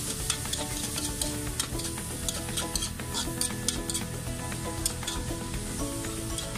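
Chopped kangkong stems and pork sizzling in an aluminium wok while a metal spoon stirs and scrapes through them, with frequent sharp clicks of the spoon against the pan.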